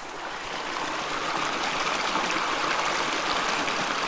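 White water rushing and churning in a river: a steady rushing noise that builds a little in the first second and then holds.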